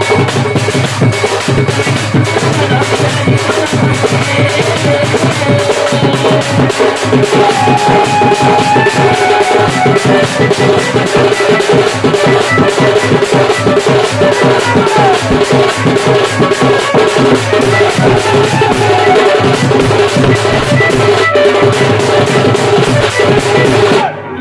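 Dhol barrel drum beaten fast with a cane stick on one head and the bare hand on the other, a dense, unbroken rhythm of strikes. A few held, sliding melodic tones sound over the drumming.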